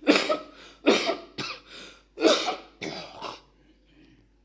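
A man coughing into a close microphone: a run of about five harsh coughs over some three seconds.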